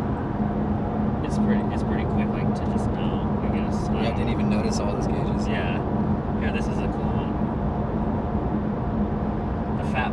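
Nissan GT-R R35's twin-turbo V6 and tyres heard from inside the cabin while cruising at freeway speed: a steady drive noise with a constant low hum.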